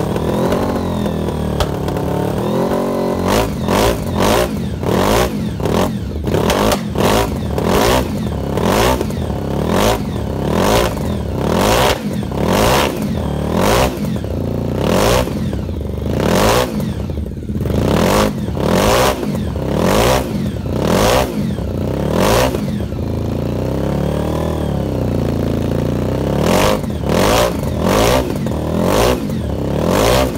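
A heavily modified racing motorcycle built around a Honda VFR750 V4 engine, standing with its rear wheel raised. It idles unevenly for a few seconds, then is revved hard in quick throttle blips, about one a second, with a short lower-revving lull before the blips start again near the end.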